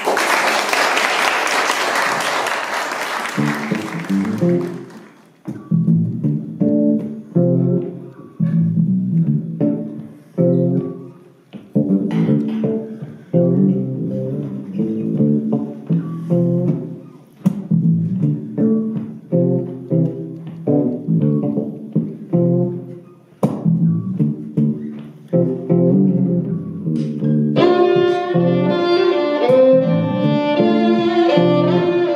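Audience applause that dies away over the first few seconds, then an electric bass guitar playing a solo line of plucked notes. Near the end a violin comes in over the bass.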